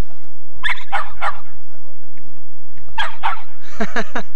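Short barks in two quick runs of three, the first about half a second in and the second near the end.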